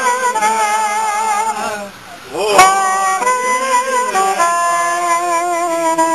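A reed wind instrument playing a slow Hungarian song melody with vibrato. About two seconds in it breaks off briefly, then comes back with an upward scoop into long held notes.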